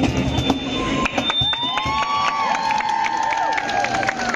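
Street crowd applauding and cheering at the end of a song: dense clapping throughout, a high whistle near the start, and long drawn-out cheers rising and falling over the clapping in the second half.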